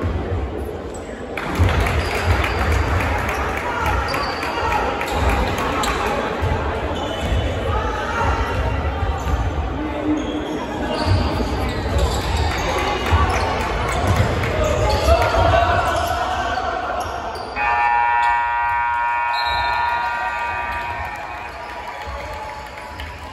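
Basketballs bouncing on a hardwood gym floor amid crowd voices and shouts during free throws. Near the end a gym scoreboard horn gives one steady buzz lasting about three seconds, the final buzzer as the last 1.3 seconds run out.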